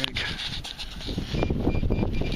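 Bare hands prying a large plug of grassy sod and soil out of a dig hole: irregular rustling and crunching of dirt and grass roots, with a few sharp knocks as the camera is jostled.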